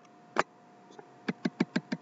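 Sharp little clicks from a computer input device: a single click, then a quick run of about six clicks at roughly seven a second while the on-screen page scrolls up.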